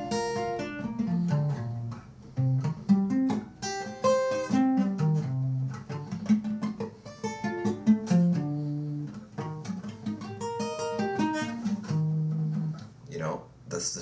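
Acoustic guitar picked one note at a time, running up and down B-flat major arpeggios as a string of quick single notes.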